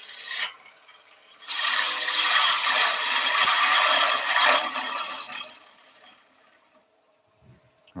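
Bowl gouge taking a light finishing cut on wood spinning on a lathe, bevel rubbing: a steady shearing hiss that starts about a second and a half in and fades away after about five seconds.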